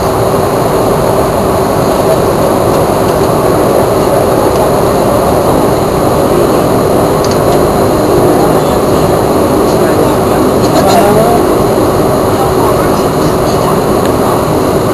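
Dash 8-300 turboprop engines running, heard inside the passenger cabin as a loud, steady drone with a low hum.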